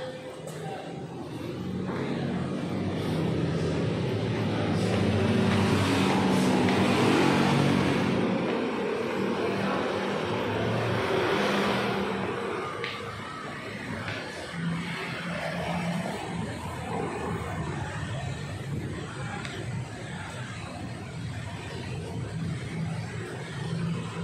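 Road traffic. A passing vehicle's engine swells to its loudest about seven seconds in and fades by about twelve seconds, leaving a steadier, lower traffic hum.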